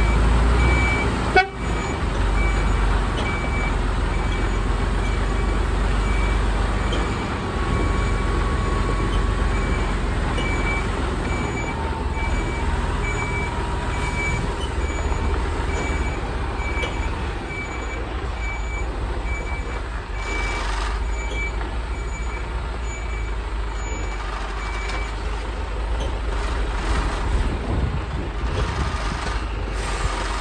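HGV tractor unit reversing: the diesel engine runs with a low steady rumble while the reversing alarm beeps at an even rate, stopping about five seconds before the end. A single sharp knock about a second and a half in.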